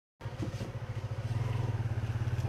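An engine idling steadily: a low, rapidly pulsing rumble.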